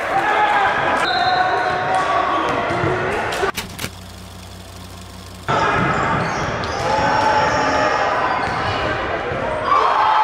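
Basketball dribbling on a hardwood gym floor, with players' and onlookers' voices. About a third of the way in the sound drops out for nearly two seconds, leaving only a low hum, then the bouncing and voices return.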